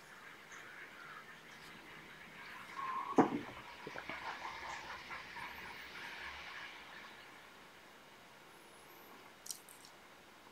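Faint rustling and scratching of a dubbing needle working a single fibre free from a dyed feather section, with one sharp tap about three seconds in.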